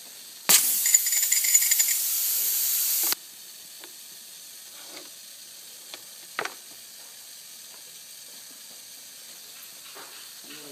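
A sudden loud rush of compressed air at the air bearing, rough and whistling at first, then steady, cutting off sharply after about two and a half seconds. Afterwards the bearing's faint steady air hiss, with a few light clicks.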